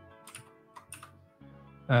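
A few faint keystrokes on a computer keyboard, over quiet background music.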